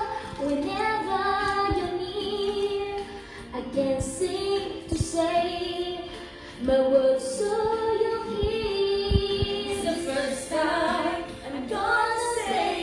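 Women's voices singing a slow ballad in long, held notes, with a few soft low thumps around the middle.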